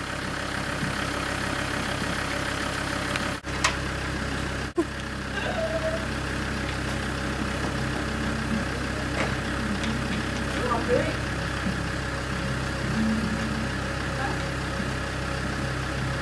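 A vehicle engine idling steadily, a low even hum that cuts out briefly twice a few seconds in.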